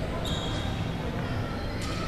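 Busy indoor badminton hall ambience with a steady low rumble and background voices. Sports shoes give a brief high squeak on the wooden court floor about a quarter second in, and there is a sharp hit near the end.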